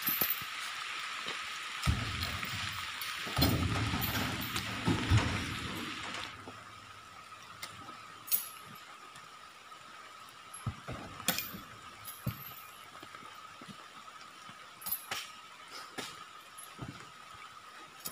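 Heavy rain hissing for about the first six seconds, then dropping away. Through it come scattered knocks and thuds of oil palm fruit bunches being thrown by hand into a truck's cargo box.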